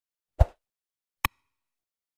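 Two sound effects from a subscribe-button animation: a short, deep pop about half a second in, then a sharp mouse-click sound a little over a second in.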